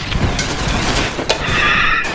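Distorted, effects-processed cartoon soundtrack: a noisy rumble with a couple of sharp clicks, then a high, wavering voice-like tone in the last half second.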